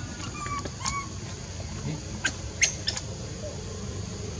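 A few short, high-pitched calls and sharp chirps. The loudest chirps come in a quick cluster a little past halfway, over a steady high hiss.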